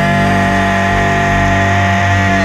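Slowed-down grunge rock: a distorted electric guitar chord rings out under a long, steady high note.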